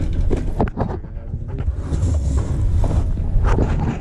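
Brazing torch flame burning with a steady low rumble and hiss, with a few faint clicks.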